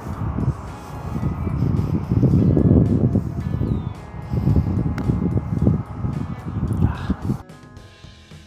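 Gusty wind rumbling on the microphone, rising and falling, over soft background music. About five seconds in there is a single sharp tick, fitting a putter striking a golf ball.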